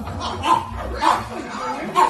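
Dog yips and short barks, three brief bursts, over voices.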